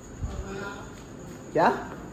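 Steady high-pitched insect chirring, with a man saying a short word near the end.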